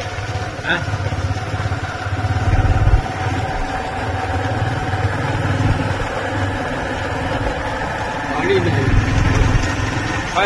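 A vehicle engine running steadily while under way, with a low, uneven rumble throughout.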